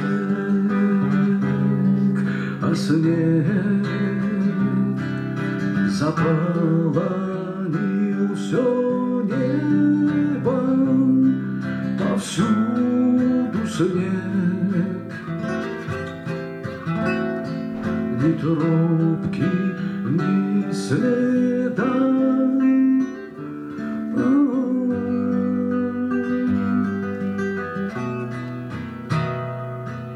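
Classical nylon-string guitar played fingerstyle: a continuous instrumental passage of picked notes and chords.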